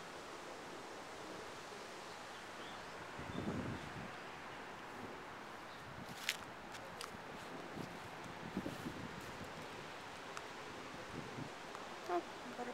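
Outdoor ambience on a sunny hilltop: a steady soft hiss of breeze through the trees and the distant city. A brief low rumble comes about three seconds in, and a few faint clicks follow in the middle.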